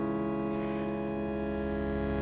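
Church organ holding one steady chord, the psalm accompaniment sustained without change.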